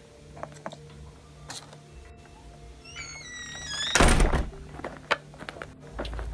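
Light clicks of plastic toy figurines being handled on a tabletop, then a single loud thud about four seconds in, just after a brief pitched sound.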